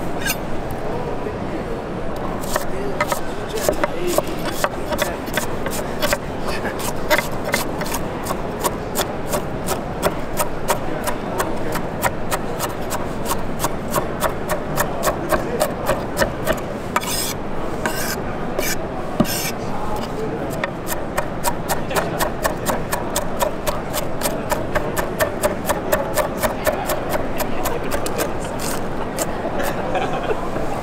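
ShanZu chef's knife chopping onion on a wooden cutting board: a fast, even run of blade strikes on the board, about four a second, as the onion is minced.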